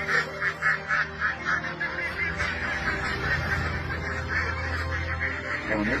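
A flock of domestic ducks quacking in a fast, continuous run of calls as they are unloaded, loudest in the first two seconds.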